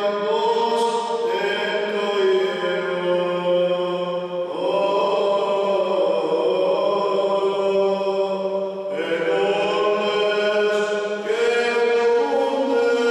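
A man's voice in Byzantine liturgical chant, the Greek Orthodox priest's chanted Gospel reading. He holds long, drawn-out notes that step to a new pitch every few seconds, over a steady low tone.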